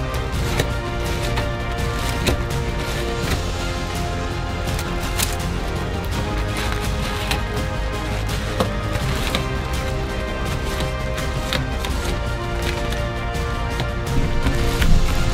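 Irregular plastic clicks and clacks of a 21x21x21 Rubik's cube's layers being turned by hand, under steady background music.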